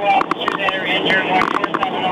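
Indistinct men's voices talking, with short clicks and knocks mixed in.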